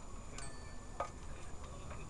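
Bicycle ride on a city street: a steady low rumble of riding, with two sharp clicks about half a second and a second in.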